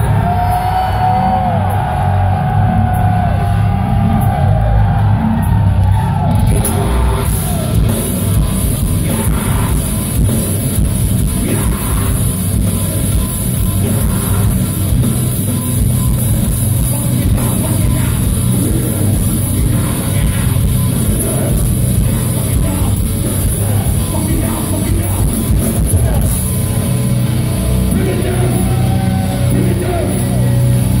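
Heavy metal band playing live at full volume: distorted electric guitars, bass guitar and drums.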